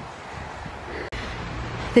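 Steady outdoor background hiss, broken by an abrupt cut about a second in, after which a low steady rumble joins the hiss.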